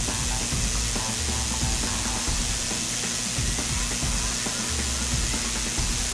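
Omegasonics 7700 ultrasonic cleaning tank running a cycle in a moisture-displacement rust-proofing solution, giving a steady, even hiss from the agitated liquid.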